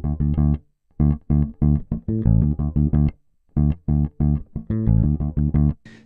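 Electric bass guitar played fingerstyle: quick runs of sixteenth notes broken by short silent gaps, about a second in and again about three seconds in.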